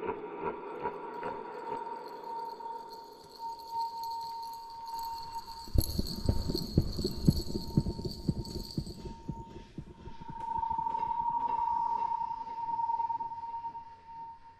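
Eerie film soundtrack: a steady high tone throughout, with a sudden burst of rapid clattering clicks about six seconds in that dies away by about ten seconds. Near the end the tone swells louder and wavers.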